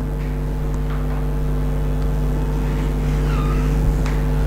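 Steady low electrical hum with even background noise, no other event standing out.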